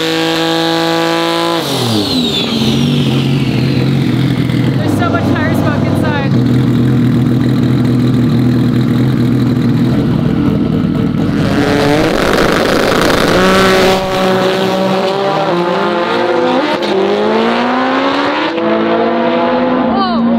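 Seven-second Subaru drag car's engine held at high revs through a burnout, then dropping to a lower, steady note while staging. About twelve seconds in comes a loud full-throttle launch, and the engine pulls away through several gear changes, its pitch climbing and falling back with each shift.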